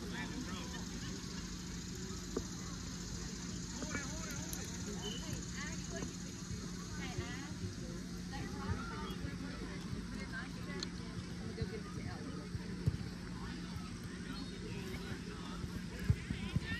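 Faint, distant shouting and chatter from players and spectators across outdoor soccer fields, over a steady low hum, with a few small knocks.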